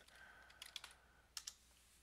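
Faint computer keyboard typing: a quick run of quiet key clicks in the first second and a half, as a currency-pair symbol is typed into a chart search box.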